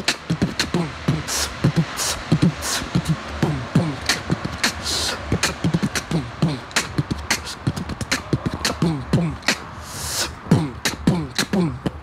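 A man beatboxing a beat: low, falling kick-drum sounds made with the voice, with sharp hi-hat clicks and a few longer hissed cymbal or snare sounds between them.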